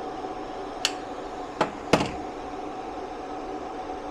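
Steady machine hum with a held tone from a 12 V 2000 W pure sine wave inverter and the induction cooktop it powers, running under a load of about 1,700 W (over 150 amps on the DC side). A few light clicks come in the first two seconds.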